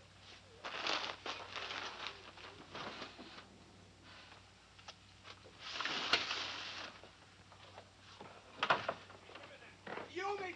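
Rustling of clothes being handled, then a wooden drawer sliding about six seconds in, and a sharp knock near the end, over a steady low hum.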